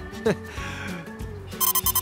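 Light background music, then a quick run of electronic beeps near the end: a cartoon robot's computing sound as it searches its database.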